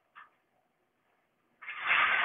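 A slotted steel mounting rail being lifted out of the metal tray frame and handled: a short scraping, rattling noise starting near the end, after a quiet stretch.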